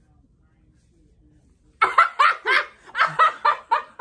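Loud women's laughter breaking out about two seconds in after a quiet moment, in a quick run of ha-ha pulses.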